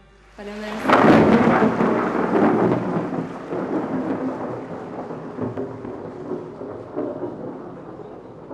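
Theatre audience applauding at the end of a song. The applause swells sharply about a second in and slowly dies away.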